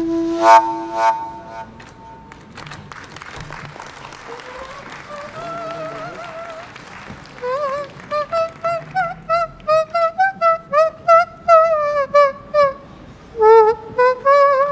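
A held note on a shepherd's wind instrument stops just after the start, with two sharp clicks, and a few seconds of applause follow. Then a high, warbling melody of short notes with quick pitch bends is played on a small whistle held in cupped hands. It starts faint and grows louder from about seven seconds in.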